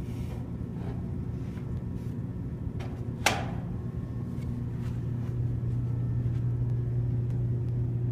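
A steady low hum that grows louder over the last few seconds, with a single sharp click or knock a little over three seconds in.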